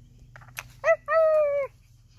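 High puppy-like whines voiced for a knitted toy dog: a short one just under a second in, then a longer one, after a sharp click about half a second in.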